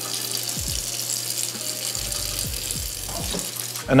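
Tap water running in a steady stream into a kitchen sink and down a garbage disposal drain.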